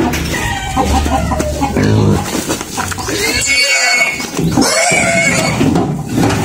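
A pig squealing while tied with rope and being handled: two high-pitched squeals, a longer one about three seconds in and a shorter one about five seconds in.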